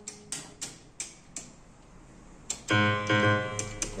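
Plastic keys of an opened Yamaha PSR-730 keyboard clacking as they are pressed one at a time, most giving no note: dead keys, which the owner suspects are caused by dirt on the contacts. About two and a half seconds in, a full piano-like note sounds from the keyboard's speaker and rings briefly.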